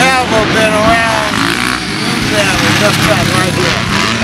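A man talking, with the words not made out, over the running engines of motocross dirt bikes on the track.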